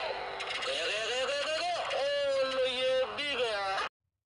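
FM radio broadcast playing through the small speaker of a solar-powered trainer's FM receiver: a voice over a steady hiss, cutting off abruptly near the end.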